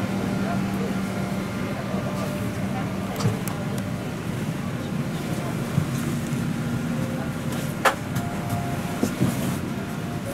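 Cabin ambience of a Boeing 737-800 during boarding: a steady hum from the cabin air system under a murmur of passengers' voices, with a few sharp knocks and clicks.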